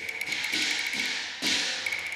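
Cantonese opera percussion: a fast roll of sharp wooden clicks on a woodblock, then a cymbal crash about one and a half seconds in, with more quick clicks just after it, over a thin held high note.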